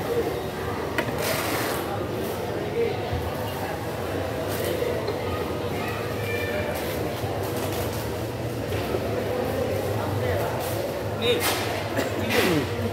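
Steady hubbub of background voices in a busy fish market, with a few sharp knocks of a machete striking a wooden chopping block while cutting tuna in the first two seconds.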